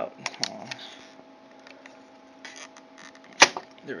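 A few small clicks and ticks as a Toshiba laptop hard drive is wiggled in its metal bracket, then one sharp click about three and a half seconds in as the drive comes free of its connector.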